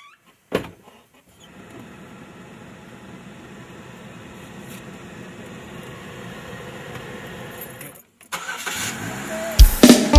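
A car door of a Chevrolet SUV shutting with a single thud about half a second in, then a steady low hum inside the cabin. The engine starts about eight seconds in, and music comes in near the end.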